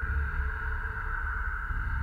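Steady electronic drone: a high held tone over a low, pulsing rumble.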